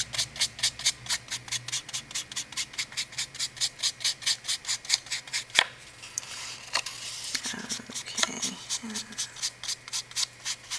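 Foam sponge dauber dabbed quickly and lightly onto cardstock, about five or six soft pats a second, tinting the paper with ink. Partway through there is a sharper click and a short rub, then the dabbing starts again near the end.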